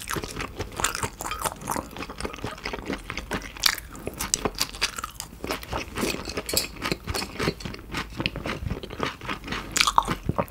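Close-miked chewing of raw beef (mungtigi): a dense, irregular run of wet, sticky mouth clicks and smacks as the chewy meat clings to the mouth.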